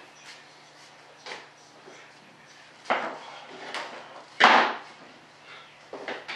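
Tools and small parts being handled on a workbench: a few short knocks, and a louder half-second clatter about four and a half seconds in.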